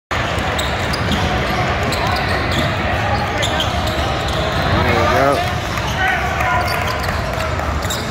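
Basketball game sound in a busy hall: a ball bouncing on the hardwood court over a constant din of crowd chatter, with some shouting about five seconds in.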